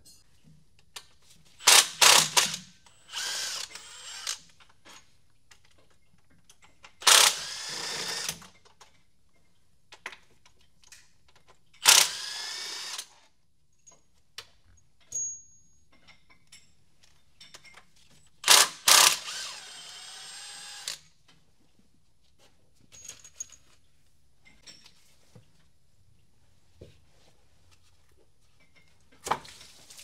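A handheld power tool runs in several short bursts of a second or two, spinning up and slowing each time as it backs out the thermostat housing bolts.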